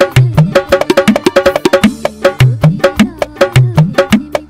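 Octapad played with drumsticks: sampled percussion hits in a fast, steady rhythm, about five or six strikes a second, over a recurring pitched bass line.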